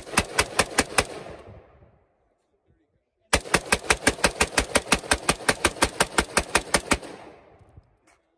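AR-15-style rifle fired in rapid strings: a short quick run of shots, then after a pause of about two seconds a longer string of about thirty evenly spaced shots at roughly eight a second, each with a short echo off the range.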